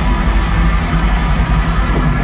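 Pagan metal band playing live: distorted electric guitars, bass and drums in a loud, dense, unbroken wall of sound.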